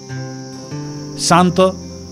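A steady, high-pitched insect drone, like a cricket or cicada chorus, over background music with held low notes. A few loud spoken syllables come in about a second and a half in.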